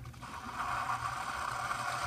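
Single-serve pod coffee brewer's pump running steadily with a hissing, sputtering hum as it pushes out the last of the brew into the mug, near the end of its brew cycle. The sound swells in shortly after the start and keeps going.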